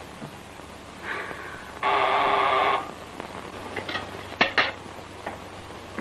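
Electric servant's call buzzer sounding: a faint short buzz, then a loud steady buzz lasting about a second. A few sharp clicks follow near the end.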